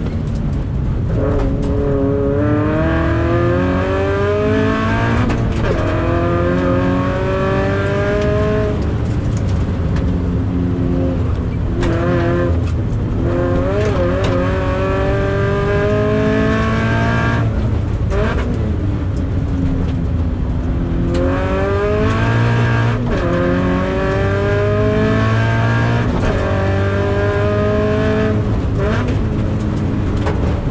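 Toyota 86's FA20 2.0-litre flat-four engine heard from inside the cabin under hard acceleration, its pitch climbing in three long runs with a brief drop at each upshift. Between the runs the revs fall away as the car slows for corners.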